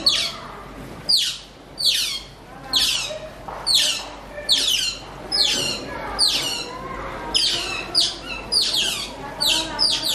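Otters chirping: high-pitched calls that each slide steeply down in pitch, repeated steadily about once a second.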